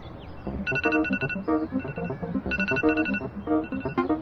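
A telephone-style ringtone trilling in short bursts about two seconds apart over soundtrack music. The first ring comes under a second in.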